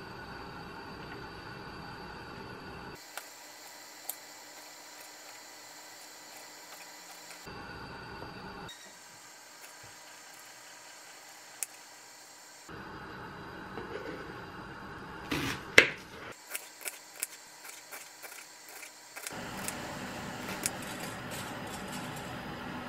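Kitchen knife slicing cherry tomatoes and garlic on a wooden cutting board. Quiet room tone is broken by a few single light taps, then a quick run of sharper knocks of the blade on the board about two-thirds of the way through.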